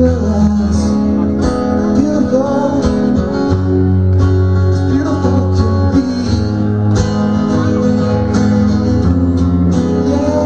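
A rock band playing live, with guitar to the fore.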